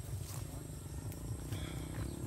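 Low, irregular rumble of wind buffeting the phone's microphone.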